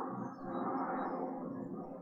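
A man humming one long, steady closed-mouth 'mmm' while thinking.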